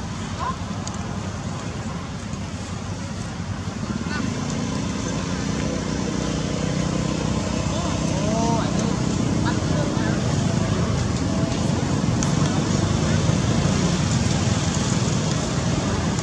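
Steady outdoor background rumble, like road traffic, growing louder from about four seconds in, with indistinct voices and a few brief high calls about eight seconds in.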